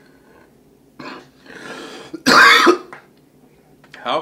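A man clearing his throat: a short rasp about a second in, then a loud, harsh cough-like clearing for about half a second.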